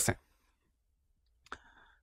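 The end of a man's spoken word, then near silence broken by a single short click about one and a half seconds in, just before he speaks again.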